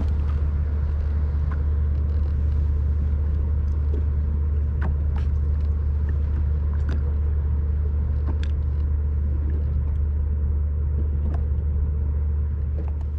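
Sea-Doo personal watercraft engine idling with a steady low rumble, with a few faint ticks over it.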